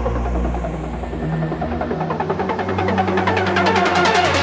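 Hardstyle track in a build-up: the deep bass drops out about halfway through while a filtered sweep rises in pitch, before the full beat comes back in.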